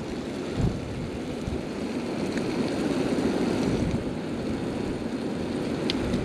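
Wind buffeting the microphone: a steady rumbling noise, with a brief low thump about half a second in.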